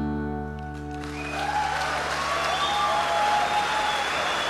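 The band's final chord, led by acoustic guitar, rings on and fades, and audience applause and cheering swell up about a second in as the song ends.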